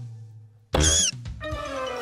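A short, loud, squeaky cartoon-creature cry with a rise-and-fall in pitch, lasting about a third of a second, just before the middle. Children's background music follows.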